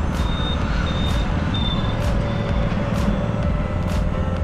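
Steady engine and road rumble of a vehicle driving along a town road. In the first two seconds there are three short high-pitched beeps, and a faint sharp tick comes about once a second.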